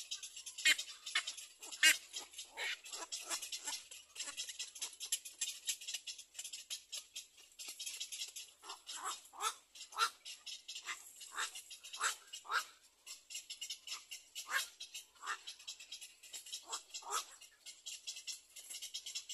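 Short calls at a cormorant nest, repeated about once or twice a second, heard over a dense, high-pitched rattling buzz.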